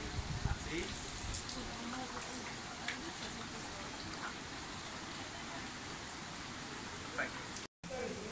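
Water trickling and splashing as a bamboo ladle is poured over hands at a shrine purification basin, with people talking in the background.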